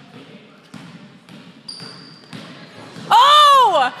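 A few soft basketball bounces on a hardwood gym floor. Near the end comes a loud, drawn-out cry from a woman's voice, rising then falling in pitch, as a three-point shot goes up.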